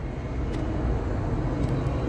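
Low, steady rumble of vehicle engines and traffic on a city street, with a couple of faint clicks.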